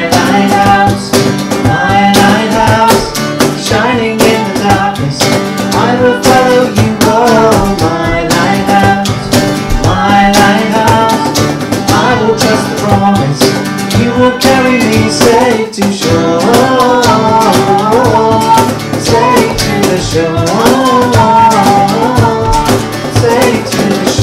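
A live worship song: strummed acoustic guitar and voices singing, with a cajón keeping a steady beat.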